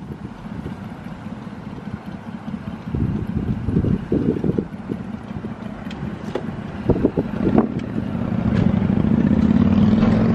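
Car driving, heard from inside the cabin: a steady low road and engine rumble with some wind noise. A few light knocks come about seven seconds in, and a pitched engine hum swells near the end.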